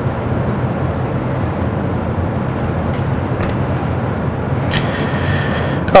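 Steady low room noise, an even rumble with a faint hum and no speech.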